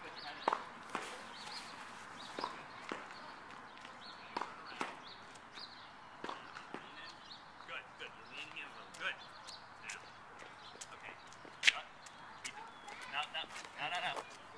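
Quiet outdoor ambience with faint, distant voices and scattered short clicks and taps, one sharp click a little before the end.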